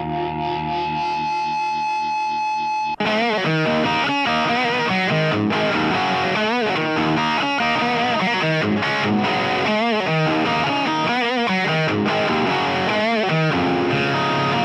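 Blues-flavoured hard rock recording led by distorted electric guitar. It opens on sustained chords with a pulsing waver, then after a brief break about three seconds in, a busier guitar passage with bent notes.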